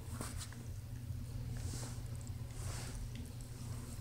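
Faint steady low hum of room tone, with a few light clicks and two soft breathy rustles about a second apart near the middle.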